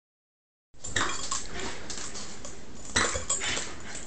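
A French bulldog making a few short sounds over a steady hiss, one near the start and a stronger one near three seconds. The audio starts about three-quarters of a second in.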